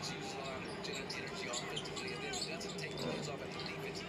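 Basketball game broadcast audio: the ball dribbling on the court amid many short, sharp sounds of play, with a commentator's voice low underneath.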